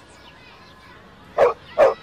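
A dog barks twice, two short loud barks less than half a second apart, near the end.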